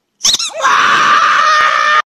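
A voice screaming loudly and harshly for about a second and a half after a short high cry, then cutting off abruptly.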